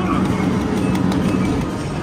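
Loud arcade din from the game machines, with a steady low hum under it.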